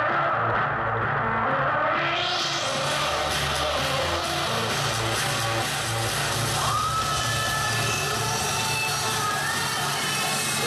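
Electronic dance music from a DJ set played over a loud outdoor PA, with a steady repeating bass line. In the first two seconds the treble sweeps away and back in.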